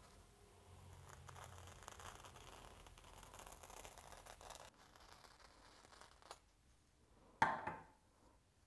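A furrier's knife slicing along the leather side of a shadow fox pelt, a faint rasping cut lasting about four seconds that stops abruptly. A brief, much louder sound follows near the end.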